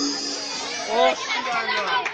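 Several people's voices chattering, with no music.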